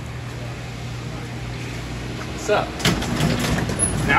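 A steady low machine hum, like a motor running, stopping a little before the end, with short voices near the end.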